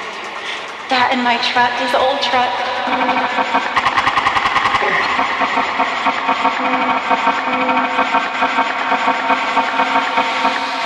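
Techno track in a breakdown: layered, sustained synth chords with no kick drum, jumping louder about a second in, with a fast roll of repeated hits in the middle.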